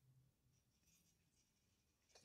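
Near silence: a pause in speech with only a very faint low hum.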